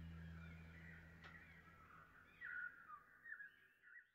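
Very faint: a low held note fades away, and a few short bird-like calls sound in the second half.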